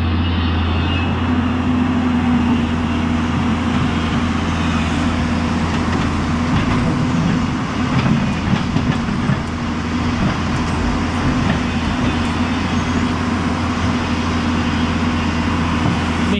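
Hyundai 210 crawler excavator's diesel engine running steadily as its bucket digs into the riverbed, over the rush of river water. There is some knocking and unsteadiness in the middle as the bucket works the rocks in the water.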